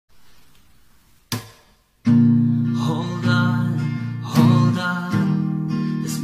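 Acoustic guitar: one strummed chord just over a second in, dying away, a short gap, then chords strummed and left ringing from about two seconds on, a new strum every second or so.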